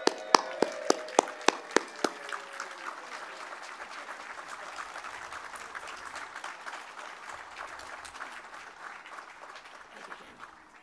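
Audience applauding. For the first two seconds a few loud, close single claps, about three or four a second, stand out over the crowd's clapping, which carries on evenly and thins near the end.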